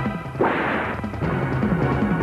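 Dramatic film-score music with a rhythmic low-note figure. About half a second in it is cut by a sudden hissing crash of noise, under a second long: a dubbed-in fight hit effect.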